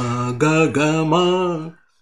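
A man singing Indian sargam note syllables (sa, ga) to a slow melody: three held notes, the last one longest and higher in pitch, stopping shortly before the end.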